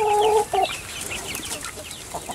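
A pen of young chickens cheeping: many short, high peeps scattered throughout. A steady, held call sounds in the first half second, then the peeping goes on more quietly.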